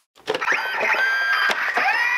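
Electronic sound effects from a replica Iron Man helmet as its faceplate lifts: steady high electronic tones and rising whines, with many clicks.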